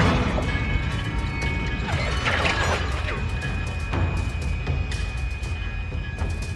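Film sound effects for a swarm of flying swords: rapid, irregular clicks with several falling swishes over a steady low rumble, with music underneath.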